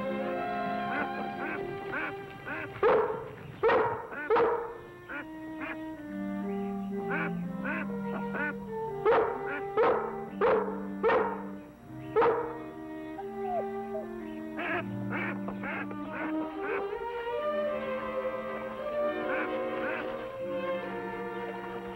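Orchestral score with sustained string notes, cut through by loud, short animal calls in quick clusters: three about three seconds in, four more around nine to eleven seconds, and a few later.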